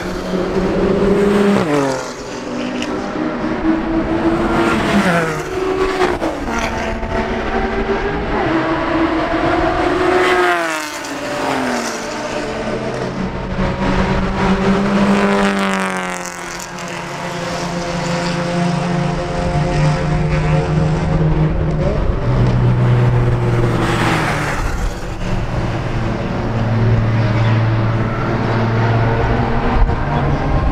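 Sports car engines at high revs on a race track. Their pitch climbs and drops sharply through gear changes several times as cars pass, with more than one car heard at once. In the second half the tone is lower and steadier as a car approaches.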